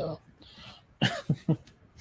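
A man coughing and clearing his throat: three short, sharp coughs about a second in.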